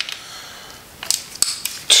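A ratchet with an Allen socket is working the oil pump support plate bolts on a cam plate. It is quiet at first, then gives a few short metallic clicks and clinks in the second half.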